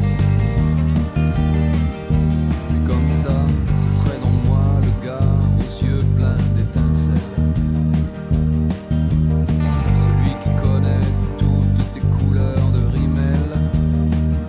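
Fender American Professional II Jazz Bass played fingerstyle through a DI preamp, a steady line of low notes over the song's recorded band track, with guitar in the mix.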